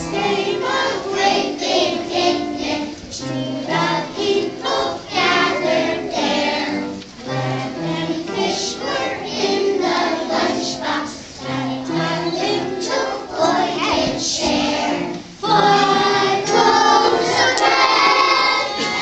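A group of preschool children singing a song together.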